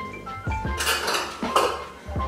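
A kitchen utensil scraping and clinking against a mixing bowl as softened butter and sugar are beaten together by hand, a few sharp clinks among the scraping, over background music.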